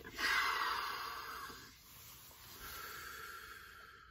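A man breathing deeply through his nose into his cupped hands: one long breath that fades away, then a second, softer breath about two and a half seconds in.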